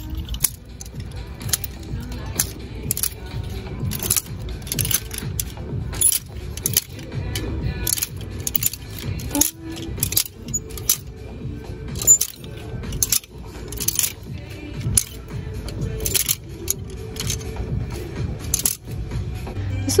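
Clear plastic clothes hangers clicking against each other in quick, irregular clusters as garments are pushed along a rack, over background music.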